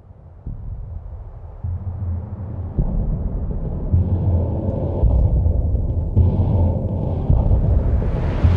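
Deep rumble that builds in loudness in several sudden steps, with a rushing noise joining about halfway through as it swells.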